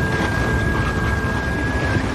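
Ominous anime sound effect: a low, dense rumble with one thin, steady high tone held over it, the tone ending just before the close.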